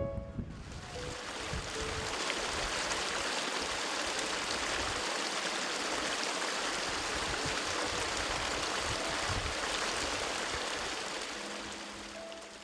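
Small stream running over stones: a steady rush of water that eases off near the end.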